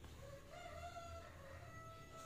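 A faint rooster crow: one long call that starts about half a second in.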